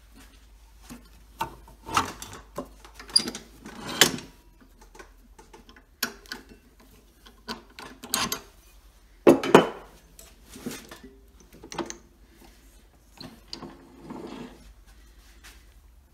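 Handling noises as a turned pen blank on steel bushings is taken off a stopped wood lathe: irregular metal clicks, knocks and scrapes from the tailstock and bushings, the loudest a sharp knock about nine and a half seconds in.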